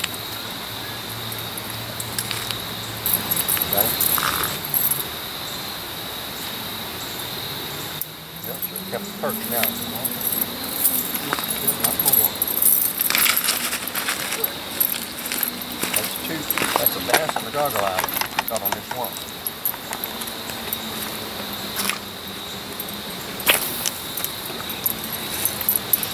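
Small metal fishing tackle clinking and jangling as it is handled, with scattered clicks and rustles, the busiest stretch in the middle. A steady high-pitched whine runs underneath.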